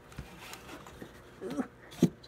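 Faint rustling and handling as a box of baking soda is pushed into the back of a shelf, with a short murmur about one and a half seconds in and a sharp knock at the very end.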